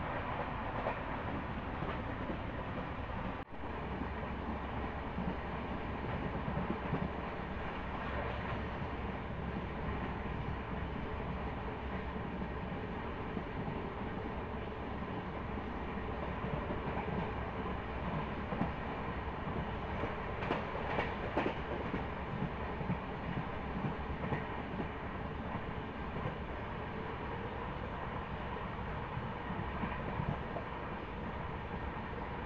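Passenger train running at speed, heard from an open coach doorway: a steady rumble and rush of air with clatter of wheels over the rails. The sound drops out for an instant about three and a half seconds in.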